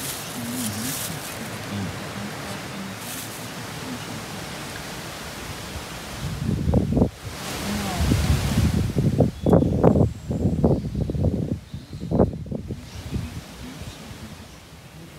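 Steady hiss of wind through forest leaves, then from about halfway a few seconds of irregular low rumbling surges, like gusts buffeting the microphone, before it settles again.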